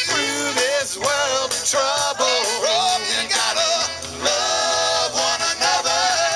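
A live band playing a feel-good rock song, with electric bass and electric guitar under several voices singing together.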